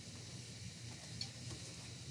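Quiet, steady background hiss with a couple of faint soft ticks about a second in, from hands folding a denim hem on a pressing board.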